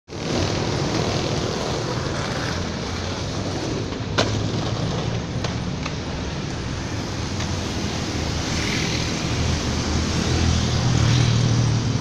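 Steady road traffic noise from passing vehicles, growing louder near the end, with one sharp click about four seconds in.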